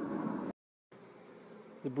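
Honeybees buzzing over an open hive's brood frame, a steady hum that cuts out completely about half a second in and comes back fainter.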